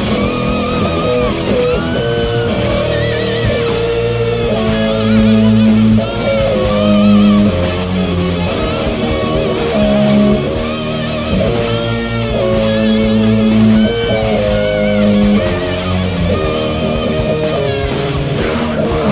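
Heavy metal played on distorted electric guitar: an instrumental passage of held notes that bend and waver, over a heavy low backing.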